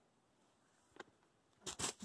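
Mostly quiet, with a faint tick about halfway through. Near the end come two short scuffing thuds close together as a boulderer comes off the boulder and lands on feet on the pine-needle ground.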